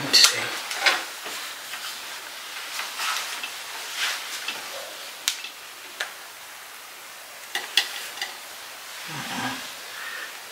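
Close rustling and crackling of hands working through hair, with a few light clicks scattered through it.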